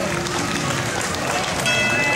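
Christmas parade music playing as a float passes, with held notes and a new chord starting near the end, over the chatter of a crowd of spectators.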